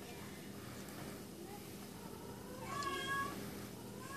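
A faint short high-pitched call, a little under a second long, about three seconds in, over a low steady background hum.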